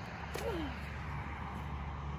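Faint snap of a slingshot-style toy foam rocket being released from its stretched elastic band, about a third of a second in, with a brief falling tone just after, over steady low background noise.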